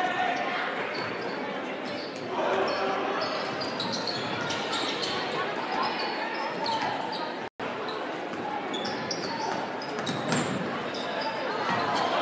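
Basketball being bounced on a hardwood gym floor during play, over a steady bed of crowd voices echoing in the gym. The sound drops out completely for an instant a little past halfway.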